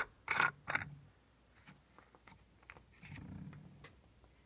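Handling noise at a workbench: two short scraping rustles in the first second, a few faint clicks, then a low rumble near the end as the camera is moved.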